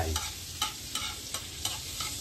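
Metal spatula stirring and scraping in a wok while margarine sizzles as it melts over the heat, with light scrape-clicks about twice a second over a steady hiss.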